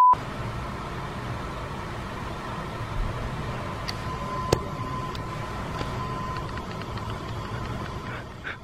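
A test-tone bleep under colour bars cuts off right at the start. Then comes a steady low rumble and hiss of background noise, with a single sharp click about halfway through.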